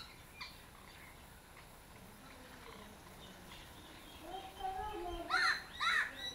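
A crow cawing twice near the end, two short loud calls, after a quieter pitched call or voice about four seconds in.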